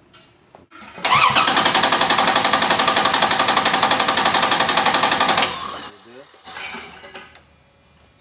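Six-cylinder engine cranked by its starter with the ignition disabled, so it turns over without starting. There are about four and a half seconds of even, rapid compression pulses that begin about a second in and stop sharply. The even rhythm matches every cylinder compressing about equally: good, equal compression.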